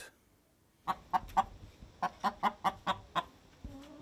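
Domestic hen clucking in short, sharp calls: three quick clucks about a second in, then a rapid run of about five more. A faint steady low hum starts near the end.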